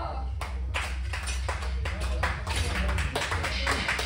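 A few people clapping by hand, in irregular claps about three or four a second, with voices underneath, cheering a completed heavy barbell back squat.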